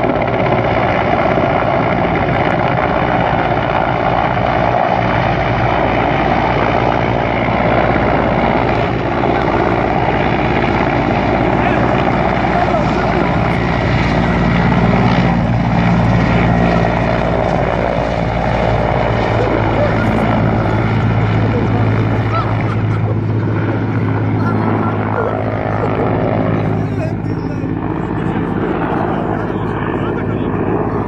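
Army helicopter hovering close by, its rotors and engine running loud and steady, with a low hum that strengthens in the second half.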